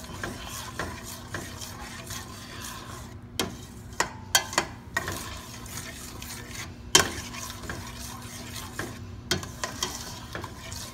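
A spoon stirring thick shrimp sauce in a stainless steel pot, with several sharp clicks of the spoon against the pot between about three and five seconds in and the loudest one about seven seconds in, over a faint sizzle from the simmering pot.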